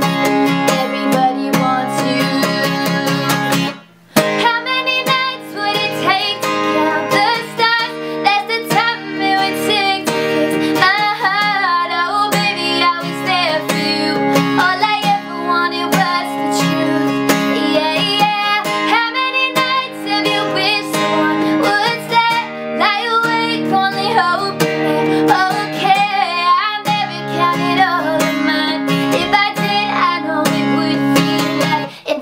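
Acoustic steel-string guitar, capoed, strummed in a steady rhythm under a woman's singing voice. The playing breaks off briefly about four seconds in, then resumes.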